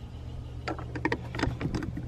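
Several light clicks and knocks in the second half, over a low steady rumble.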